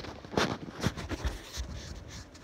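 Handling noise on a handheld phone's microphone: a few brief rubs and knocks, with a low rumble around the middle.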